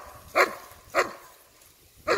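A dog barking: three short, sharp barks about half a second apart, then a pause.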